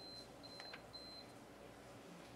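Near silence: room tone, with a faint high-pitched electronic tone sounding in a few short broken pieces over the first second or so, and a couple of faint clicks.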